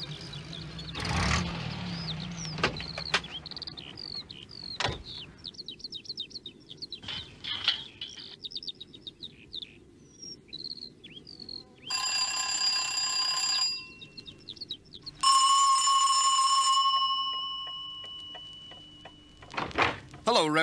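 Birds chirping, then a doorbell rung twice, each ring lasting a little under two seconds, the second fading away slowly.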